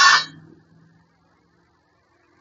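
A metal hitch bar clinking down onto a concrete floor: one short metallic ring at the start that dies away within half a second, leaving near silence with a faint hum.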